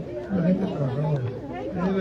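A man speaking, with many voices chattering in the background.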